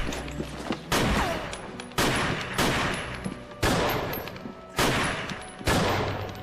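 A gunfight: about seven single gunshots, roughly a second apart, each ringing on in a long echo off the walls of a large stairwell. A short falling whine follows the shot about a second in.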